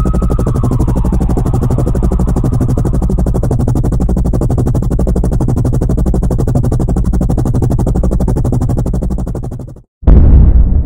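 Loud, steady, rapid chopping of a helicopter rotor. A police siren slides down in pitch and fades out in the first second or so, and the chopping cuts off suddenly just before the end.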